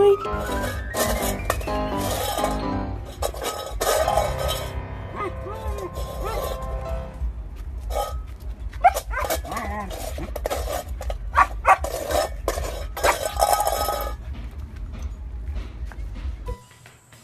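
Background music, with a dog's short calls over it in the middle and later part.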